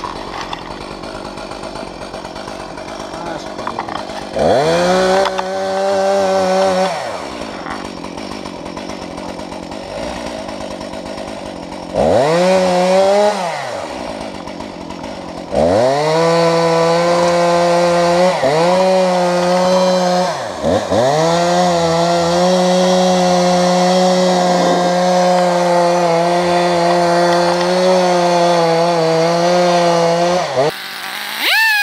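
Two-stroke chainsaw idling, then run up to full throttle: a short burst about four seconds in, another around twelve seconds, then a long steady run from about fifteen seconds to the end with two brief dips, as it cuts wood.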